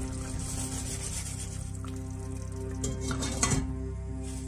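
Glass lid set back onto a stainless-steel cooking pot, a few sharp clinks about three seconds in, over steady background music.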